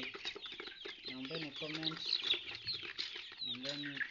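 A flock of young Kuroiler chickens peeping and cheeping without a break, many short high chirps overlapping.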